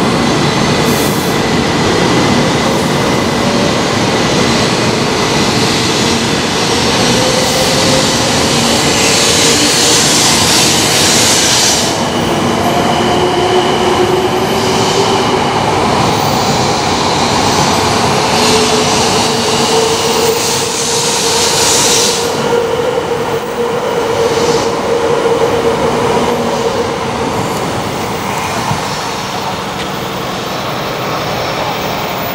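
A 700 series Shinkansen pulls out of the station and runs past along the platform, picking up speed. Its motor whine glides slowly in pitch over a steady rolling rush, with two spells of louder hiss. The sound eases slightly near the end as the last cars pull away.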